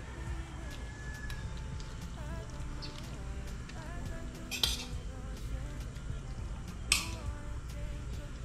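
Two sharp metallic clinks from a stainless steel frying pan and its utensil as a vegetable stuffing is scooped out of it, one about halfway through and one near the end, over a low steady hum.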